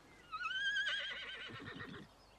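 A horse whinnies once, starting about a third of a second in: a long, high call that rises, wavers and then fades away.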